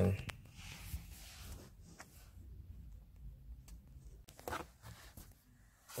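Handling noise from a hand-held phone: low rumbling and rustling as it is moved about, with a few faint clicks.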